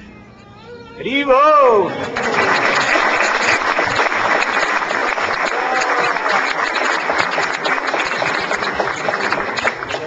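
An audience applauding for about eight seconds, stopping right at the end, led in by one loud voice calling out that rises and falls in pitch about a second in.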